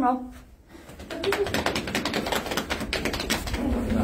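A rapid, even rattle of taps or clicks, like a drum roll, starting about a second in and running on for about three seconds.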